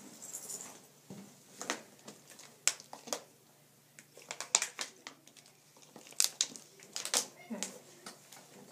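Letter tiles being picked up and set down on a board: a run of irregular sharp clicks and taps, with some rustling.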